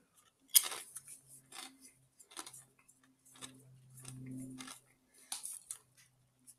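Chewing a crunchy Doritos Flamin' Hot Tangy Cheese tortilla chip dipped in salsa: a sharp crunch about half a second in, then irregular softer crunches. A low hummed 'mmm' comes through the middle.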